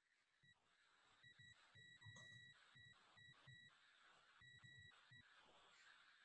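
Near silence, with only faint, broken background noise.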